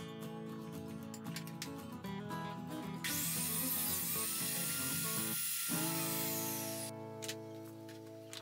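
Background music throughout. From about three seconds in, a table saw runs and cuts through a board pushed along a sliding jig, a loud noisy rush over the music that lasts about four seconds and stops abruptly.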